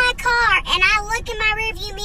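A woman's voice speaking in a high pitch, with some drawn-out syllables.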